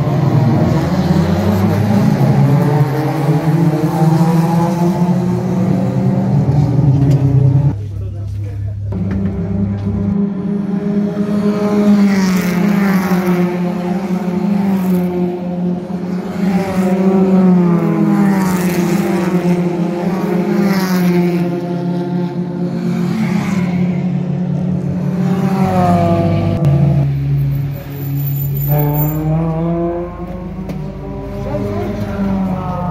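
Several race cars' engines running hard on the circuit, their notes overlapping, stepping up and down and gliding as the cars pass; several falling sweeps come near the end as cars go by.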